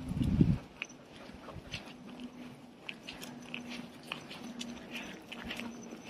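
A thump on the phone's microphone as it is moved, then scattered light crunches and clicks of someone and a leashed dog walking on asphalt strewn with dry leaves.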